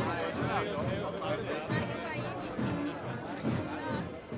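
Several people talking over one another close by, no single voice standing out, with music in the background.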